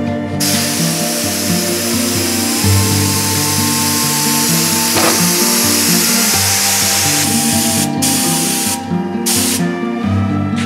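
Compressed-air gravity-feed spray gun hissing steadily as it lays down epoxy primer. The trigger is let off briefly twice near the end. Background music plays over it.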